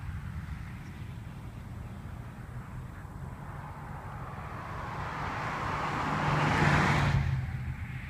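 A road vehicle passing close by, its tyre and engine noise growing louder over a few seconds, peaking near the end and then falling away quickly, over a steady low rumble of traffic and wind.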